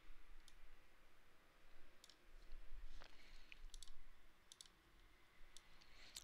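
Several faint computer mouse clicks spread over a few seconds, a couple of them in quick pairs.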